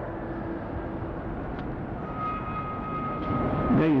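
A pause in a man's speech filled with the steady hiss and rumble of an old public-address hall recording. A thin, steady whistle-like tone sounds from about halfway through until the voice comes back at the very end.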